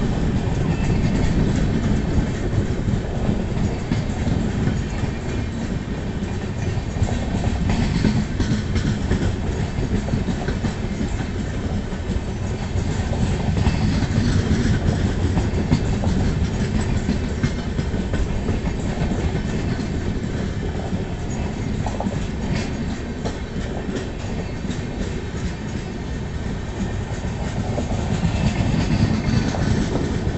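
LHB passenger coaches of an express train rolling past, a steady rumble with the clickety-clack of wheels over rail joints, growing a little louder near the end as the last coach passes.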